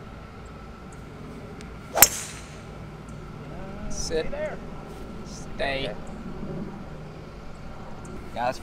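A golf club striking a teed ball on a tee shot: one sharp crack about two seconds in.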